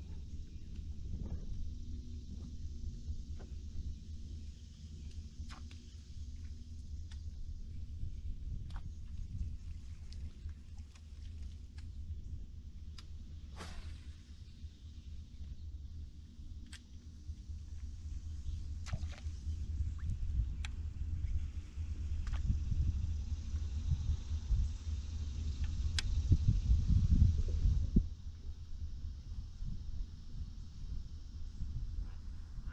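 Wind buffeting the microphone as an uneven low rumble, gusting harder near the end, with scattered light clicks and ticks.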